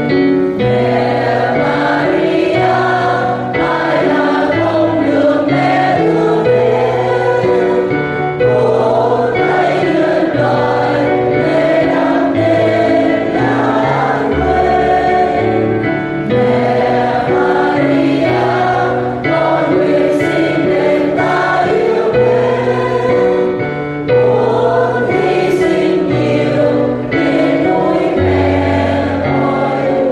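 A choir singing a Vietnamese Catholic hymn to the Virgin Mary.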